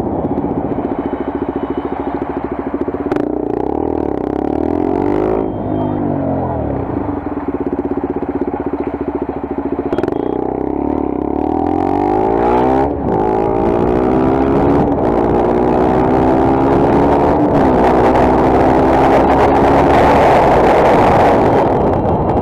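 Motorcycle engine heard from the rider's position while riding. It rises and falls in revs, then accelerates through several upshifts, each one a sudden drop in pitch followed by another climb. Wind noise grows louder near the end.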